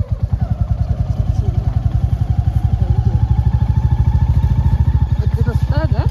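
Royal Enfield Bullet's single-cylinder engine running at low speed on a rough gravel track, a rapid, even thump that gets a little louder about a second and a half in.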